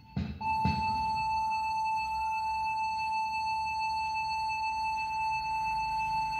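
Instrumental backing track of a pop ballad between sung lines: two plucked notes just after the start, then a single steady high note held for about five seconds.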